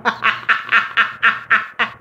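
Stifled, breathy snickering laughter in quick pulses, about five a second.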